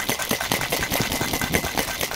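Ice rattling rapidly inside a metal cocktail shaker as it is shaken hard to chill a cocktail.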